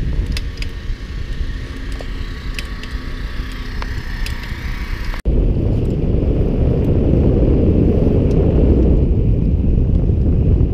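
Wind rushing over the microphone of a camera on a moving bicycle, a steady low rumble, with scattered light clicks in the first half. The sound breaks off suddenly about five seconds in and comes back louder.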